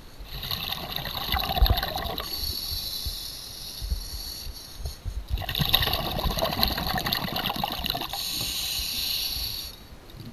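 Scuba diver breathing through a regulator underwater: two long breaths about five seconds apart, each a rush of air and bubbles.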